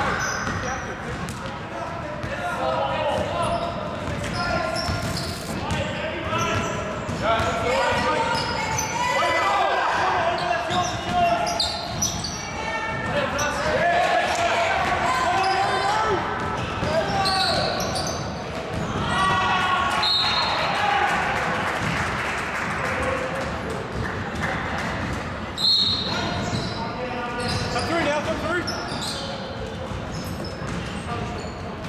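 Basketball game sounds in an echoing gym: a ball bouncing on a hardwood court amid players' calls and shouts, with a couple of short high squeaks or whistles.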